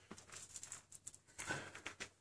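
Faint handling noise from a BowTech Experience compound bow being set up and drawn to full draw: a few light scattered clicks with soft rustling.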